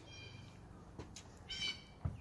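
Two faint, high-pitched bird calls in the background: one just at the start and another about a second and a half in, with a faint click between them.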